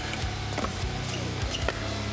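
Pickleball paddles striking the ball in a rally: two sharp pops about a second apart, over steady low background music.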